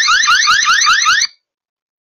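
Loud electronic alarm siren: a fast run of rising whoops, about six a second, that cuts off abruptly a little over a second in.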